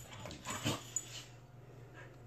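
Two dogs play-fighting, a corgi and a pit bull, with a few short dog vocal sounds in the first second, the loudest about half a second in, then quieter.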